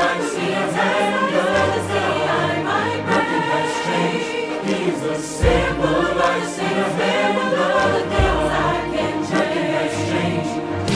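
A choir singing a Christian worship song over instrumental backing, with sustained bass notes underneath.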